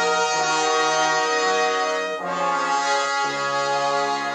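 The opening song of the Solar System for iPad app: an instrumental passage of long held chords that change about once a second.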